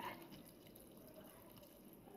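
Faint trickle of red methylated spirit poured in a thin stream from a plastic bottle into a cut-down plastic bottle of soaking shellac flakes, with a slight splash right at the start.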